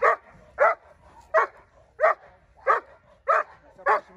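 A Dobermann barking in a steady rhythm, about seven short barks evenly spaced at roughly one every two-thirds of a second. It is a protection dog barking at a decoy to guard its handler.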